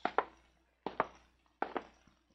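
Slow footsteps climbing stairs, a radio-drama sound effect: three pairs of short knocks, a little under a second apart.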